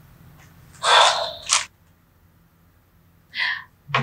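A woman's breathy exhale, about a second long, ending in a small click; after a stretch of dead silence a second short breath comes near the end.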